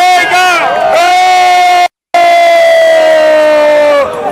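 A crowd shouting "Tiga!" ("three!") to finish a countdown, then one long held yell as a product is unveiled, its pitch slowly falling. The yell cuts out briefly about two seconds in.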